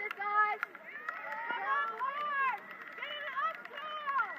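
People shouting across a rugby pitch: a string of short, high-pitched calls and yells during play, without clear words.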